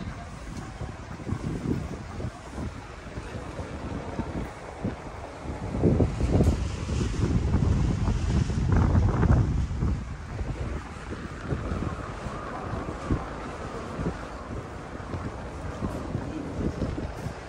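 Wind buffeting the microphone in irregular gusts, strongest in the middle of the stretch.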